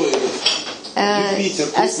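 Felt-tip marker tapping and scratching on a whiteboard as dots are drawn, a few quick taps in the first second.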